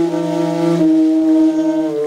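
Free-jazz duet of saxophone and bowed double bass: the saxophone holds a long note that steps down slightly about a second in, over a sustained bowed bass note.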